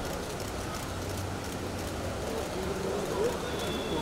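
Street ambience: indistinct voices of people milling about over a steady low hum of traffic.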